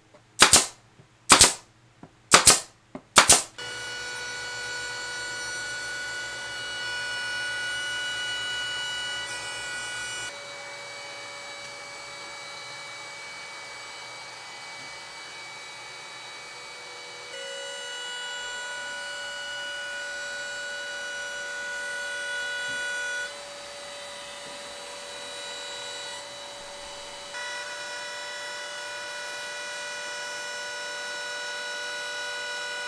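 Four loud, sharp bangs in quick succession, then a trim router running steadily at high speed with a shop vacuum pulling dust through its shroud. The whine steps up and down in level a few times.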